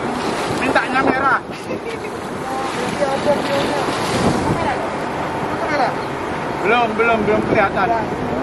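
Wind buffeting the microphone over the wash of the sea around a boat, with men's voices calling out briefly about a second in and again near the end.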